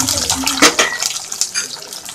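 Small onions, garlic and a green chilli frying in hot sesame oil in an aluminium pot: a steady sizzle with scattered crackles.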